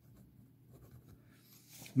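Faint scratching of a ballpoint pen writing on squared notebook paper. Near the end there is a brief rustle as the paper sheet is moved.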